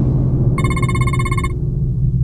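A telephone rings once, about a second long, starting about half a second in, over a steady low rumble.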